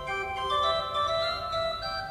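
Organ music: a slow melody of held notes.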